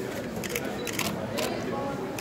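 Camera shutters clicking a few times over the murmur of voices.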